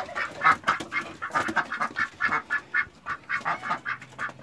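Domestic ducks quacking in a quick, steady run of short calls, several a second.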